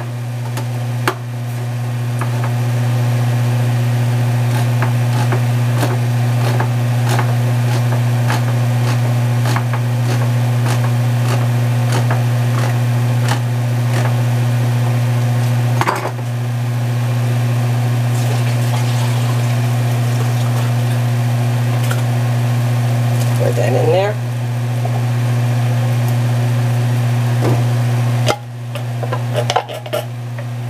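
A steady low hum fills the sound, breaking off briefly about a second in, midway and near the end. Under it come light clicks and faint bubbling from beef simmering in a cast-iron braiser.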